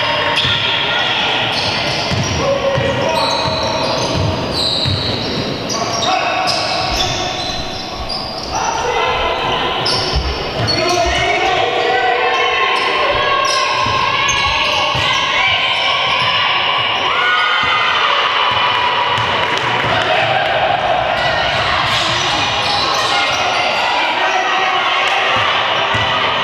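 Basketball bouncing as it is dribbled on a sports-hall court, mixed with players' shouted calls, echoing in a large hall.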